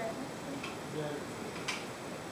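Two light, sharp clicks of hard kitchen items knocked together while being handled at a sink, the second one brighter, near the end.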